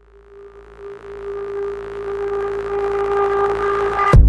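A steady synthesizer tone fading in and swelling louder, with higher overtones joining as it builds.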